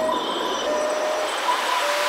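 Breakdown in a hardstyle/house track: the kick and bass are out, leaving a hissing noise wash with a thin, high held tone that breaks off and restarts.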